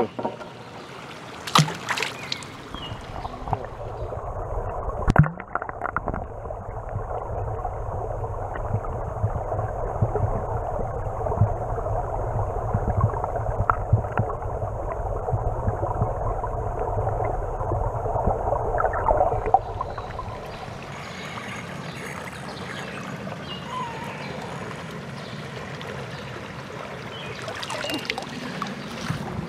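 Water splashing as the flashlight and the camera go under, followed by muffled underwater noise for about fifteen seconds. About twenty seconds in they come back up, and water trickles and drips off them.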